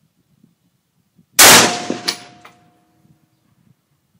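A single shot from a Century Arms GP WASR-10 AK-pattern rifle in 7.62x39mm: a sharp crack with a short echoing decay. About half a second later come two light metallic pings with a faint lingering ring.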